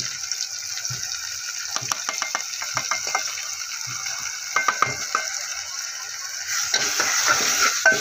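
Tomato-and-onion masala sizzling steadily in hot oil in a pan as spice powders and pastes go in, with a run of light clinks from a steel spoon. Near the end the sizzling grows louder as the spoon starts stirring the spices through.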